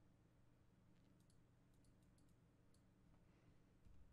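Near silence: room tone with a low hum and a few faint, brief clicks.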